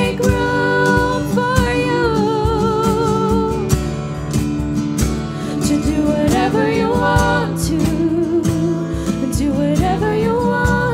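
Live worship song: female voices singing a slow melody with vibrato, over strummed acoustic guitar and a cajon beat.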